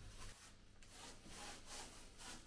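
Faint, repeated scraping strokes of a small hand tool rubbed against a rendered base coat.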